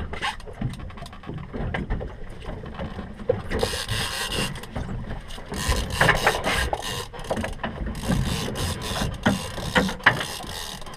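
Fishing reel working against a hooked fish: a run of fast gear and ratchet clicks, sparse at first and denser from about the middle on.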